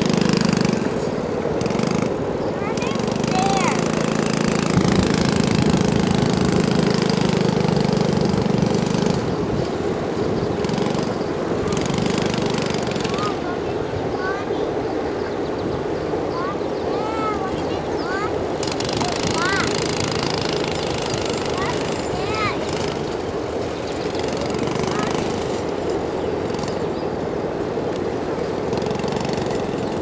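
Small youth four-wheeler engine running and rising and falling as it is ridden, under a low rumble that is heaviest for the first nine seconds. Short high chirps come and go through the middle stretch.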